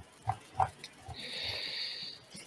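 Faint breathing noise picked up by a video-call microphone: two soft taps, then a breathy hiss lasting about a second.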